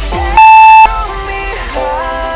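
Pop background music with a single long electronic timer beep about half a second in. The beep is higher and louder than the short countdown beeps before it and marks the end of the interval.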